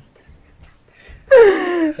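Helpless laughter: after about a second of near-quiet breathless pause, a person lets out a loud, high laughing wail that slides down in pitch for under a second.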